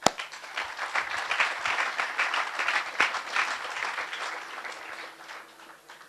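Audience applauding: many hands clapping, building up in the first second and fading away near the end.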